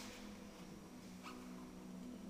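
A violin and classical guitar duo playing very softly, with low notes held steadily.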